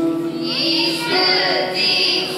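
Children singing together to musical accompaniment.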